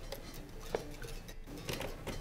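Bass guitar signal cut off through the EBS MicroBass II preamp, because the bass is plugged into the input that is not selected: no notes come through. All that is left is quiet room sound with a few faint clicks.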